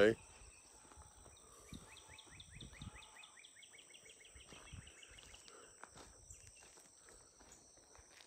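A bird singing outdoors: a faint, rapid trill of repeated short downward chirps, about seven a second, lasting some four seconds, over a steady faint high insect drone.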